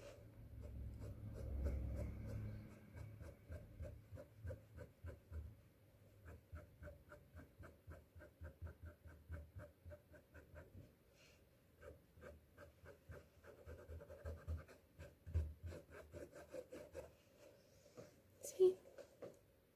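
Paintbrush dabbing short pull-away strokes of acrylic paint onto a stretched canvas: a faint, quick scratching of about two to three strokes a second, laying in fur texture. A low rumble sits under the strokes in the first few seconds.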